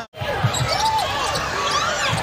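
A brief drop to silence at an edit, then game sound in an arena: a basketball bouncing on the hardwood court, with voices in the crowd.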